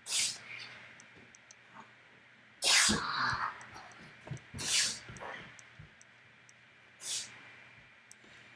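A person sneezing: four short breathy bursts, the loudest and longest about three seconds in. Faint clicks sound between them.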